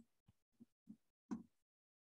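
Near silence, broken by four faint, short, soft thumps at uneven intervals, the loudest a little after one second in.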